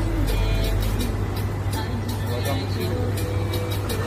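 Motor-driven stainless-steel sugarcane juice press running with a steady low hum while cane stalks are fed through its rollers.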